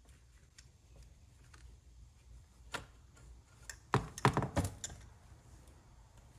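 Plastic clicks and knocks as the handle is pulled off a Ryobi string trimmer's housing: one click about three seconds in, then a quick run of sharper clicks about a second later.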